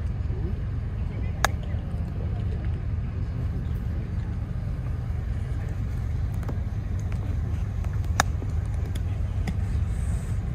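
Two crisp clicks of a wedge striking a golf ball on short chip shots, one about a second and a half in and one about eight seconds in, over a steady low rumble.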